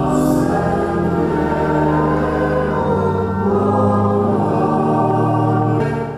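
A choir singing church music during Mass, in long, steady held chords.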